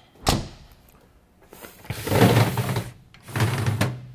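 A fire-apparatus body compartment door is unlatched with one sharp click about a quarter second in, then opened with two longer stretches of door-movement noise.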